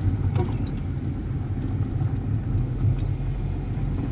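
Car driving, with a steady low engine and road rumble heard from inside the cabin, and a few faint ticks early on.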